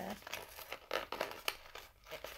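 Fingers picking and scraping at a stiff cardboard advent-calendar door, with scattered small clicks and crinkles as the tight flap resists opening.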